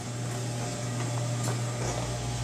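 A steady low machine hum, with a deeper hum joining near the end.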